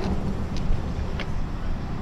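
A steady low rumble of outdoor background noise, with two faint clicks about half a second and a little over a second in.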